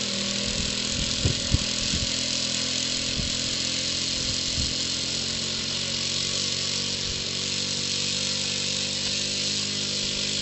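Seagull Decathlon 120 RC tow plane's engine running steadily on the ground at an even pitch, with a strong hiss from the propeller over the engine note. About a second and a half in there are two brief thumps.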